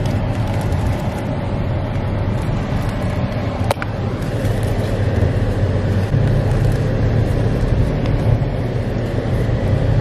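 Inside a moving car: a steady low rumble of engine and tyres on an unpaved road, with one brief sharp click a little before four seconds in.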